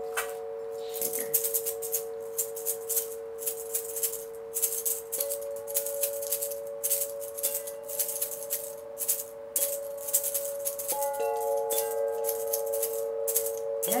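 Hanging tuned metal chime bars ringing with long sustained notes, new notes struck about five and eleven seconds in, over a shaker rattled in quick irregular bursts.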